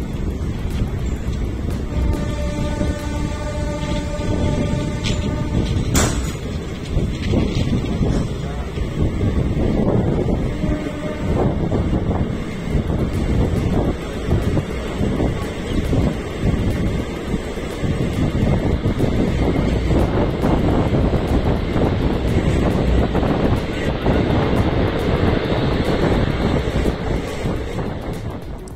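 Passenger train coach running along the track, a steady rumble and rattle of wheels and carriage. A held pitched tone with several overtones sounds for about three seconds a couple of seconds in, and there is a sharp click at about six seconds.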